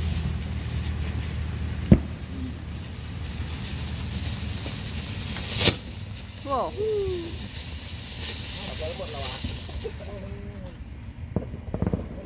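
Consumer ground fountain firework spraying sparks, a steady hiss broken by two sharp cracks, one about two seconds in and a second, louder one near six seconds.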